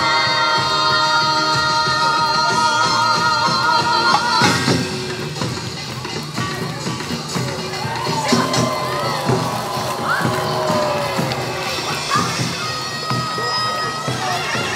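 Korean traditional folk music played live for an outdoor crowd: a held melody over percussion for the first four seconds or so, then the music goes on under crowd cheering and shouting.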